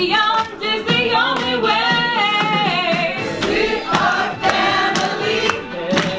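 A small group of voices singing a song together in chorus, over a steady beat about twice a second.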